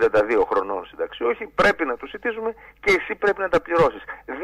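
Speech only: a voice talking over a telephone line.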